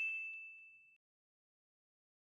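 A single bright electronic chime, the sound-effect ding of an animated logo, ringing out and fading away within about a second.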